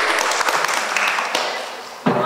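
An audience applauding, a dense patter of many hands that dies down near the end.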